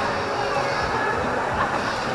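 Dodgem cars running on the track's steel floor: a steady rolling rumble.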